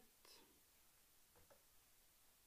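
Near silence: room tone, with a couple of faint small clicks about a second and a half in.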